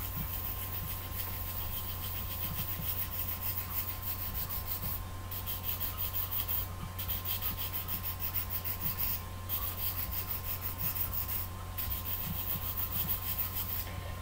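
Fine-grade nail file (emery board) rubbing over a pencil's graphite lead, sharpening it to a tapered point: a dry, scratchy sanding sound of rapid repeated strokes, stopping briefly a few times.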